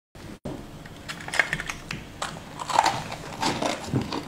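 Crisp, irregular crunching of a person chewing sugar-frosted purple sweets, close to the microphone; it grows denser and louder from about a second in.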